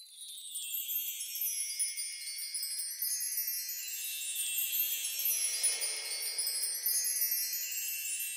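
Tinkling wind chimes, many high overlapping notes ringing together, starting suddenly and filling out within the first second.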